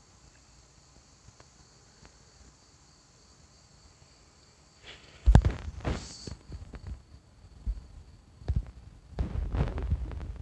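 Insects buzzing steadily and faintly, then a single sharp thump about five seconds in, followed by scattered knocks and rustling from handling the phone.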